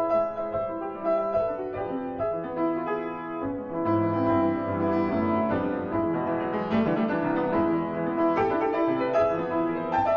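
Grand piano playing the fast section of a contemporary solo piano piece: a dense, continuous stream of changing notes and chords.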